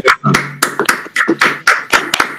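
Hands clapping, about eight or nine uneven claps, heard through a video call.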